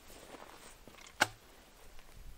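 A single sharp click a little over a second in, from a 12-gauge shotgun being handled, over faint rustling.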